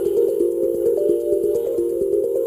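Background music: steady tones of middle pitch that shift between a few notes, over a quick ticking pulse.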